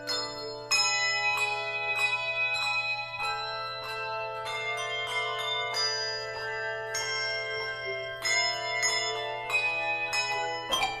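A handbell choir playing: chords of handbells struck in a steady rhythm, each chord ringing on under the next.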